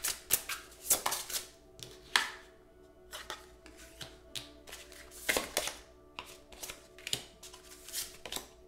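A tarot deck being shuffled and handled: quick, irregular snaps and rustles of the cards, coming in clusters with quieter gaps between. Soft background music with held tones runs underneath.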